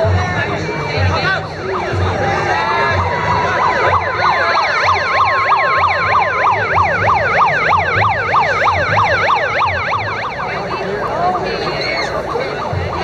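Emergency-vehicle siren: it rises into a held wail a few seconds in, then switches to a fast yelp of about four sweeps a second that fades near the end. Crowd voices and irregular low thumps run underneath.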